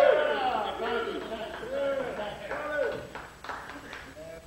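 Several men's voices talking over one another, too mixed to make out, with a few sharp knocks near the end.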